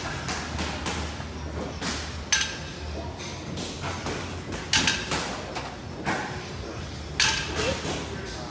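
Reps of a plate-loaded chest-supported row, each marked by a short burst of noise, the knock of the iron plates and bar with a hard breath, about every two and a half seconds, four times.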